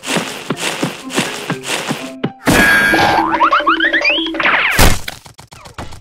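Cartoon sound effects over background music. First comes a quick run of short falling-pitch blips, about four a second. After a sudden switch come rising stepped sweeps and a loud crash-like burst near the end.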